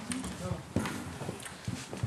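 A few scattered knocks and thumps with soft murmured voices, as people shift and settle closer together on the floor.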